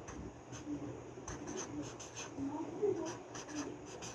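Felt-tip marker writing on lined notebook paper: a series of short, irregular scratching strokes of the tip across the page.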